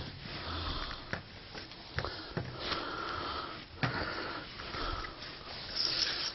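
Hands handling a fabric strip and a plastic board on a textured plastic table covering: rustling and rubbing with a few light knocks.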